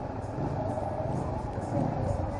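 Motorcycle engine running at low speed in slow street traffic, a steady low sound with rapid even firing pulses.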